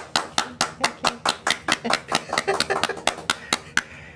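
Hands clapping: a quick, even run of distinct claps, about seven a second, that stops just before the end.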